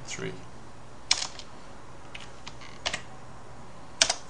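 Computer keyboard keys pressed one at a time, five or so separate clicks spread out, the loudest at the very end, over a faint steady hum.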